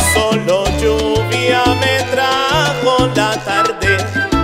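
Charanga-style salsa music in an instrumental passage: a bass line moving note by note under wavering melody lines, with Latin percussion.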